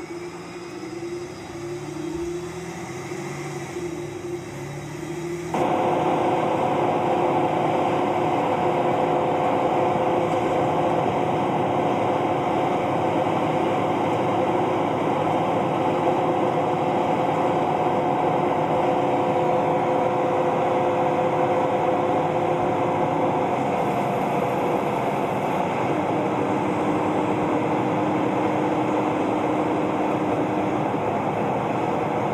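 City bus running on the road, heard from inside the cabin: a steady engine and drivetrain drone with a whine in it. It rises in pitch over the first few seconds, then turns abruptly louder about five seconds in and holds steady.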